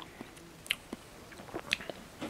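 A person chewing a small, chewy bite of paper wasp honey with bits of nest paper: a few short, sharp mouth clicks and smacks.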